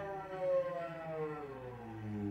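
Solo cello, bowed, sliding steadily down in pitch in one continuous glide. A lower note sounds beneath it about a second and a half in.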